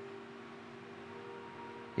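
Soft background music in a pause of the prayer: a quiet sustained chord held steady, with no beat.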